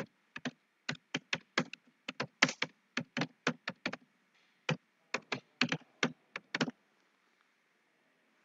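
Typing on a computer keyboard: a quick, uneven run of keystrokes with a short pause about four seconds in, stopping near the end.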